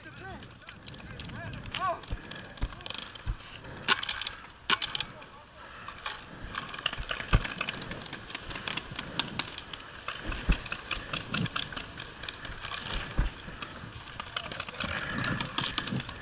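Paintball field sounds over wind noise: distant players shouting, and scattered sharp pops of paintball markers firing and balls striking, the loudest two about four and five seconds in.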